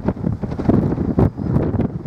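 Wind buffeting the microphone: a gusty low rumble that swells and drops throughout.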